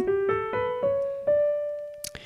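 Digital piano playing the upper run of a D major scale: about five single notes rising step by step, the top note held and fading away.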